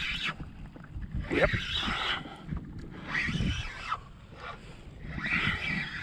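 Water lapping and sloshing against a kayak hull in three short surges, with wind rumbling on the microphone.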